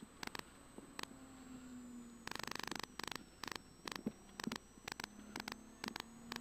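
Faint steady hum with scattered static clicks and crackles, including a quick run of clicks a little over two seconds in.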